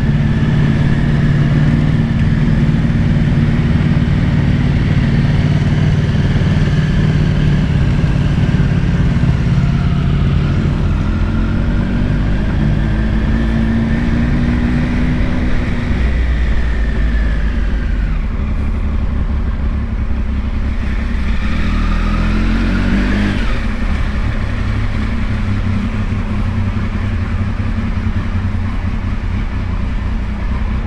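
Motorcycle engine running at low town speed, heard from the rider's seat. It holds a steady note at first, then rises and falls in pitch twice as the bike pulls away and slows.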